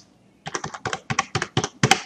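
Computer keyboard keys being struck in a quick run of about a dozen clicks, starting about half a second in, as a number is typed into a form field.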